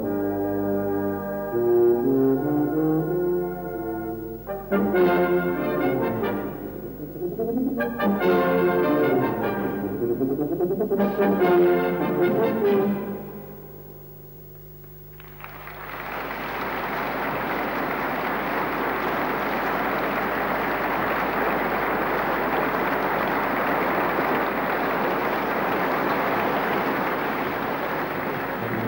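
Tuba solo with brass band accompaniment, playing phrases that rise and fall and coming to a final chord about 13 seconds in. After a short lull, audience applause runs steadily through the second half.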